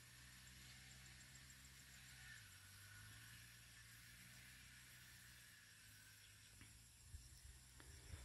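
Near silence: a faint steady hiss of background noise.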